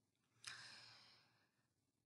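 Near silence, with one brief, faint breath about half a second in.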